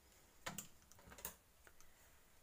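Faint clicks and rustles of kitchen string being pulled off its spool and laid over bunches of fresh parsley on a stone worktop, with a few sharp clicks about half a second in and just past a second in.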